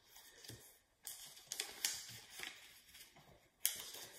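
A paper disc being folded in four by hand and its folds pressed flat: soft paper rustling with a sharper crackle about a second in and another near the end.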